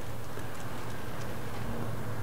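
Steady low background hum of the room, unchanged throughout.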